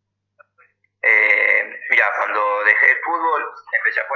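A man talking over a video call, his voice thin like a phone line. About the first second is silent, then the speech starts.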